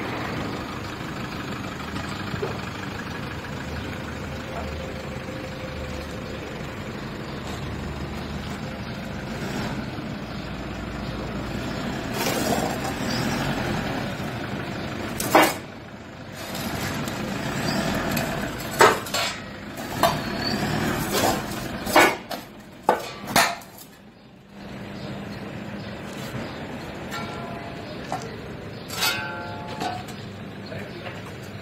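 Diesel engine of a Toyota Hilux 3.0 D-4D pickup running as the truck is driven over stamped steel shovels on concrete. Between about halfway and three quarters through come half a dozen sharp metal clanks. Near the end there is a short ringing clatter of steel shovel blades.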